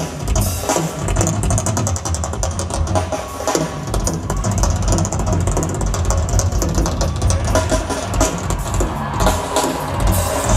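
Live drum kit solo: fast, dense strokes across the drums and cymbals over a heavy kick drum, heard through the stage PA.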